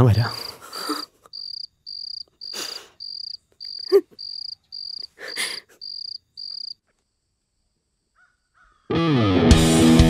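Crickets chirping at night in an even pulse, about two chirps a second, with a few heavy breaths and a short moan from a man; the chirping stops about two-thirds of the way through. After a moment of silence, electric guitar music starts near the end.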